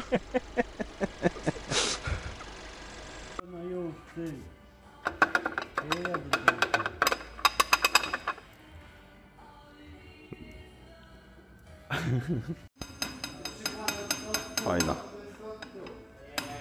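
Rapid metallic knocking, about three knocks a second with one louder strike, from a Mercedes GLA's seven-speed dual-clutch gearbox being adapted: the loud gear-change clunk the mechanic likens to someone hitting it from below with a crowbar. It gives way after about three seconds to background music with a beat.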